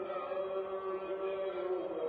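A male muezzin chanting the dawn call to prayer, holding a long drawn-out note that glides slowly in pitch and steps to another note near the end.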